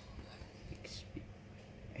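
Faint whispered voice with a short hiss a little under a second in, over low room tone.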